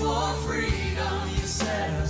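Gospel praise-and-worship singing: several vocalists on microphones singing together over steady instrumental backing, with a couple of sharp drum hits.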